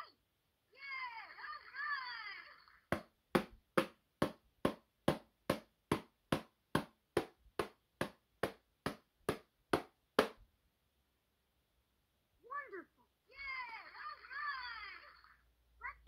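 LeapFrog Learning Drum toy: a short spoken phrase from the toy, then about twenty sharp, evenly spaced drum hits, roughly two and a half a second, as its pad is tapped by hand. A few seconds after the hits stop, another short spoken phrase follows.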